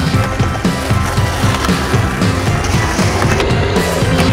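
Skateboard wheels rolling on concrete, mixed with music that has a steady beat.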